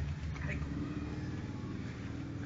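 A motor vehicle engine running, slowly fading, with a few faint clicks.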